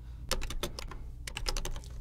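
Computer keyboard typing in two quick bursts of keystrokes as code is entered into a config file.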